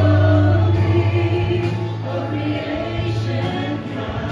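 A live worship band with several singers performing a worship song together, the voices singing as a group over band accompaniment with a deep, steady bass.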